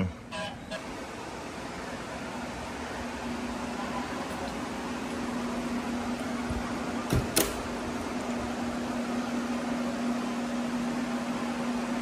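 Drying fans and dehumidifiers running to dry out a flood-soaked room: a steady rush of moving air with a hum under it, growing louder over the first few seconds as the door opens. A single sharp knock about seven seconds in.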